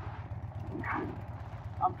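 Harley-Davidson V-twin motorcycle engine running steadily at low road speed, a low, even rumble, with wind noise on the microphone.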